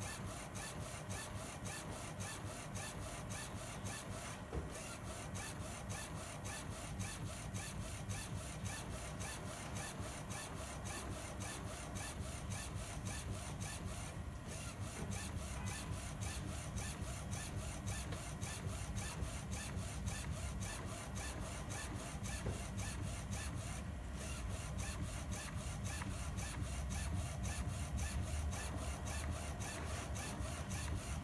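UV flatbed inkjet printer running, its print carriage with the UV curing lamp sweeping back and forth over the bed: a steady mechanical rasp with brief dips about every ten seconds.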